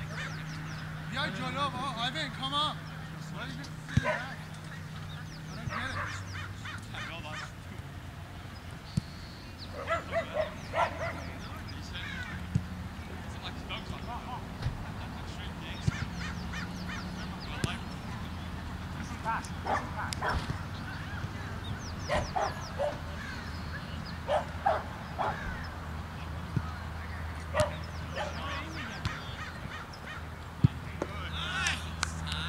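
Players' distant shouts and calls across a soccer field, in short scattered bursts, with a few sharp knocks and a steady low hum underneath.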